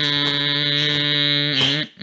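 A voice humming one long, steady note, which breaks off with a short slide in pitch near the end.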